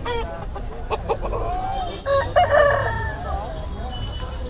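A rooster crowing: a few short calls at the start, then one loud crow about two seconds in that lasts about a second.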